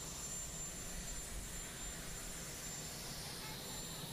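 Aircraft turbine engine running steadily on an airfield: a thin high whine over an even rushing noise and low rumble.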